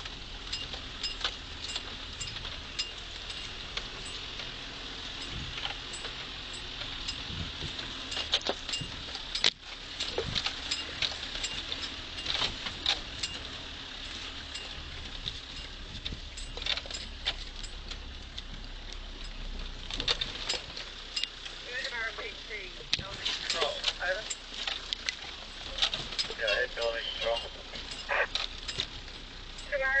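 Inside a 4WD driving slowly over a rough dirt fire trail: a steady low engine drone under a constant run of rattles, clicks and knocks as the vehicle bumps along. Muffled speech comes in over the drone during the last several seconds.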